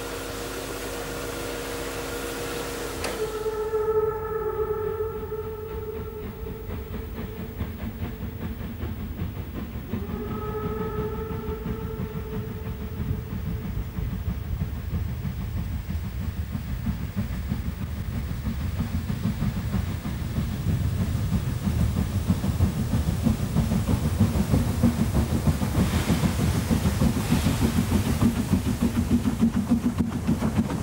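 Harz metre-gauge 2-10-2T steam tank locomotive sounding its steam whistle twice, a long blast and then a shorter one, followed by the beats of its exhaust as it works hard uphill, growing louder as it approaches.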